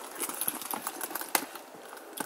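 Handling of a black leather Louis Vuitton Capucines BB handbag on a car seat: a run of small clicks and taps from its silver metal hardware, with one sharper knock about a second and a third in.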